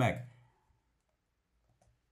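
A man's voice finishing a word, then near silence, with a faint click near the end.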